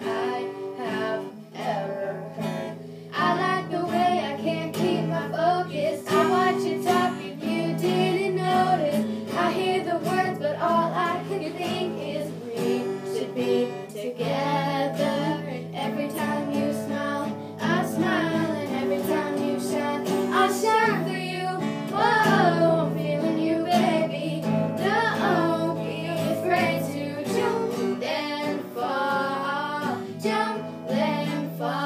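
Acoustic guitar strummed steadily, accompanying girls singing a song together.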